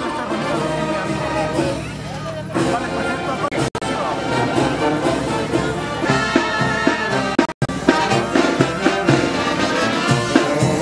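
Brass band with tuba and drums playing a marching tune. It cuts out for an instant twice.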